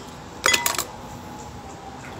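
Tableware clinking: a quick cluster of three or four bright, ringing clinks about half a second in.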